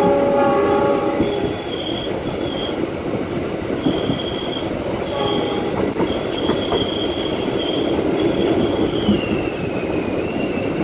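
Train running, heard from aboard with a steady rumble of wheels on rail. A locomotive horn sounds right at the start for about a second and again briefly about five seconds in. A thin, high wheel squeal comes and goes and slides lower in pitch near the end.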